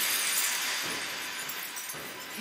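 Glassy shattering sound effect of ice magic from an anime soundtrack: a bright crackle that swells just before and slowly fades over two seconds.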